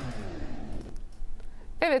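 A pause between speakers filled with faint, steady background hiss from an outdoor phone video recording. Near the end a woman says "evet" ("yes").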